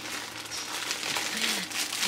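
Plastic crinkling: a plastic mailer bag and the plastic wrapping of an item inside it being rummaged through and pulled out, in a steady run of irregular crackles.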